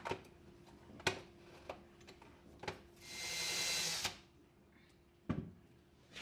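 Cordless drill with a self-centering bit boring one shelf-pin hole through a shelving jig into the plywood side of a wardrobe, a single run of about a second starting three seconds in. Before it come a few light clicks and knocks as the jig is set against the panel, and there is one more knock near the end.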